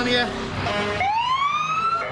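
An emergency vehicle siren starting its wail about halfway through, climbing steadily in pitch.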